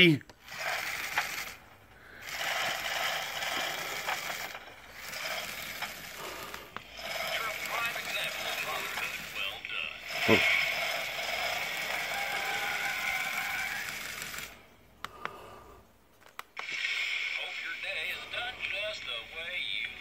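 Recorded audio from musical greeting cards' small built-in speakers: short clips of music and voice, played in several segments with brief pauses between them.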